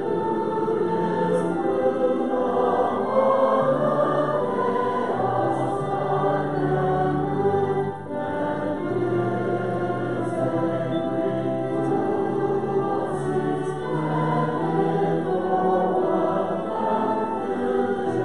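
Congregation singing a hymn together with instrumental accompaniment, over long held bass notes.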